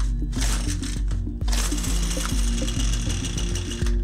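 McCulloch petrol trimmer's two-stroke engine being pull-started on full choke: the recoil starter rope is pulled, and about a second and a half in the engine catches and keeps running, over background music.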